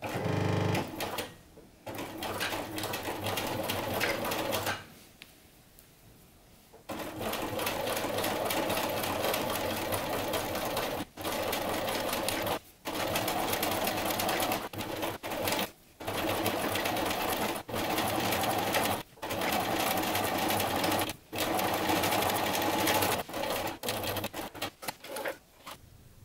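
Bernina sewing machine stitching a twin-needle hem on a knit sweater, running in steady stretches with brief stops between them and a pause of about two seconds near the start.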